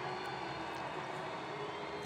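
Stadium crowd noise: a steady hubbub of many spectators, without distinct cheers or claps.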